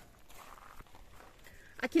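Near silence with faint outdoor background, then a voice speaking a single word near the end.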